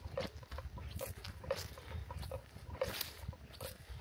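Footsteps on a woodland trail: irregular soft crunches and rustles a few times a second, over a low rumble of wind and handling on the microphone.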